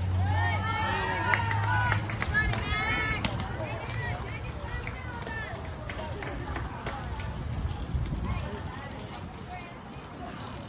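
Several voices of players and spectators shouting and calling out at once across a softball field, with a few sharp snaps among them. The shouting dies down after about four seconds.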